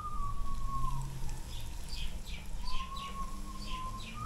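Chicken frying in a large pot of hot oil, with a steady sizzle. Over it a person whistles a slow, wavering note, and small birds chirp several times in the second half.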